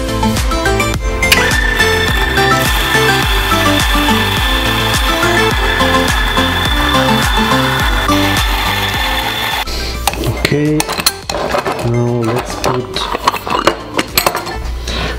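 Electric coffee grinder switched on and grinding coffee beans, a steady motor-and-grinding noise with a high whine, for about eight seconds before it stops abruptly; a few knocks and clicks follow near the end. Background music plays throughout.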